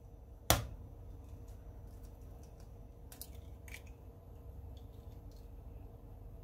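An egg struck once sharply against a hard edge to crack its shell, about half a second in, then a few faint clicks of the shell being pried apart a few seconds later, over a low steady hum.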